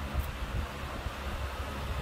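A 12-inch exhaust fan running steadily, a smooth rush of air, with an uneven low rumble from its airflow buffeting the microphone.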